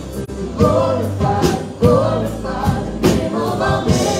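Live worship band playing a Christian song: a woman singing lead into a microphone over drum kit beats, sustained keyboard and acoustic guitar.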